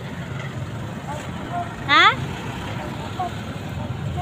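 A steady low rumble of street traffic, with a short rising 'Ha?' from a woman's voice about two seconds in.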